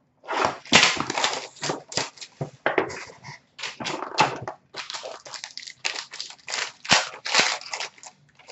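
Hockey card pack wrapper crinkling and tearing as it is pulled open, with cards and packaging handled in between: a string of irregular sharp crackles and clicks.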